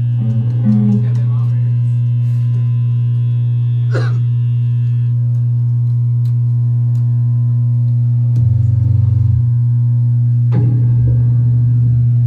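Electric guitars and bass through amplifiers holding a loud, steady low drone, with a few held tones above it. A deeper bass note joins for about a second just past the middle, and a fresh note comes in near the end.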